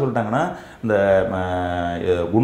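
A man's voice says a few quick syllables, then holds one sound in a long, steady, level-pitched tone for over a second, like a chanted syllable.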